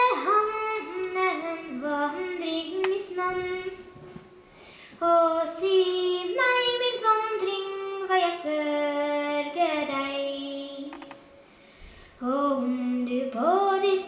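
A child singing stev, Norwegian traditional sung verses, solo and unaccompanied, with long held notes that slide between pitches. The song comes in phrases, with a short break about four seconds in and another pause near the end before the next line.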